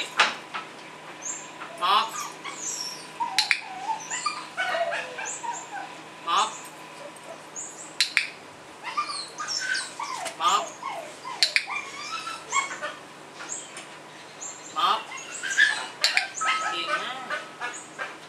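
A white Spitz puppy making repeated short, high-pitched cries while it plays, with high bird chirps and small clicks around it.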